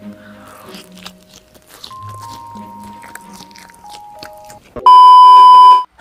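Crunchy bites and chewing of chili-coated fried calamari rings over soft background music. Near the end a loud steady electronic beep lasts about a second and cuts off suddenly.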